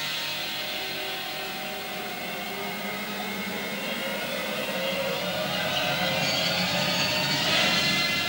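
Cartoon soundtrack playing through the small loudspeaker of a 1955 Minerva FS 43 valve television: a steady rushing sound effect with music under it, growing louder in the second half.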